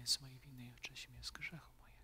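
A man praying aloud in a low voice, close to a whisper, in short phrases with a sharp 's' near the start: the priest's quiet prayer at the washing of hands.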